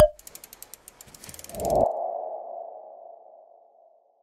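Logo sting sound effect. It opens with a sharp hit, then a quick run of ticks, then a whoosh about a second and a half in that swells into a single ringing, ping-like tone that slowly fades out.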